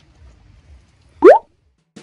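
A single short, loud rising 'bloop' sound effect about a second and a quarter in, over faint background noise.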